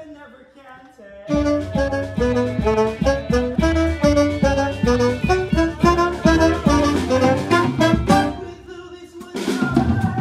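Musical-theatre pit band playing, with an alto saxophone carrying a line of quick, stepping notes over drums and bass. It comes in about a second in after a quiet moment and dips briefly near the end.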